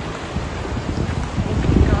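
Wind buffeting the microphone over the rush of waves breaking on a rocky shore, with the gusts strongest near the end.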